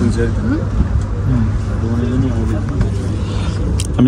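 Steady low hum of a turboprop airliner's engine running on the ground, heard inside the cabin, with people talking over it.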